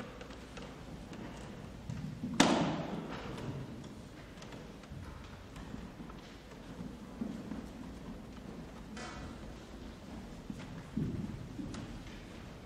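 Robed choir members filing onto the chancel: footsteps and clothing rustle, with one sharp thump about two and a half seconds in and a smaller knock near the end.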